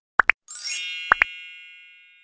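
Cartoon-style editing sound effects: two quick pairs of short rising 'bloop' pops, and a bright shimmering chime that enters about half a second in and slowly fades out.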